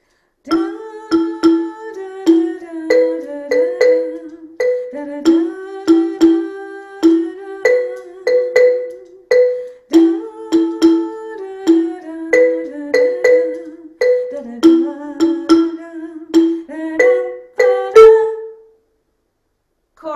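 Wooden-bar xylophone struck with mallets, playing a short repeated pattern that moves between E and B with an A at the end. A woman's voice sings the notes along with it. The strikes come in a steady rhythm, and a single loudest note near the end finishes the pattern.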